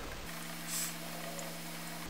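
A steady low hum of several even tones under a faint hiss, starting about a quarter second in.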